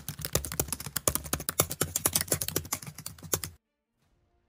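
Computer keyboard typing sound effect: a fast run of key clicks that stops abruptly near the end.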